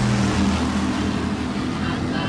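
Offshore racing powerboat's engines running at speed: a loud, steady low drone.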